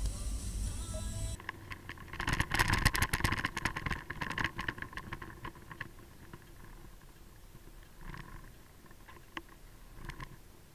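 Background music for about a second, then, after a cut, traffic sound from a vehicle-mounted camera: a fast run of clicks and rattles, loudest a couple of seconds in, fading to a low road rumble with a few separate clicks.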